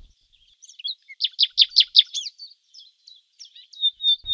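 A songbird singing: a quick run of about eight falling chirps, then scattered chirps and a thin high whistle near the end.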